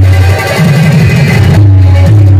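Loud live Bhojpuri stage-show music played through loudspeakers, with electronic keyboard and a heavy bass beat.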